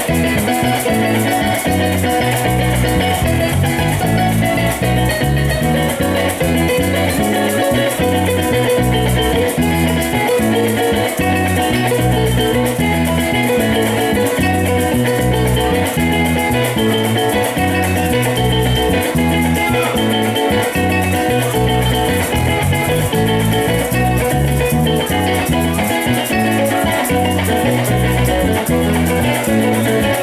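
A Colombian llanera music ensemble playing an instrumental piece: a bandola llanera picking the melody over strummed cuatro chords, with maracas shaken steadily and a deep walking bass line underneath.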